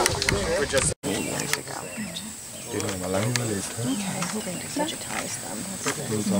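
Indistinct talk among several people, with a brief dropout of all sound about a second in.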